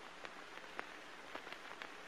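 Faint steady hiss with scattered small crackling clicks.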